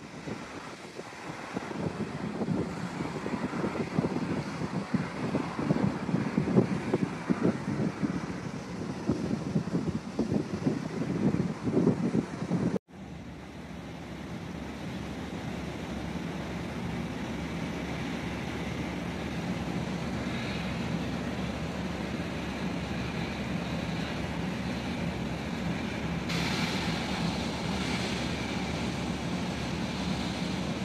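Offshore well-test burner flaring the well's hydrocarbons, a rushing, gusting noise with wind buffeting the microphone. After a cut about 13 seconds in, the rushing turns steadier.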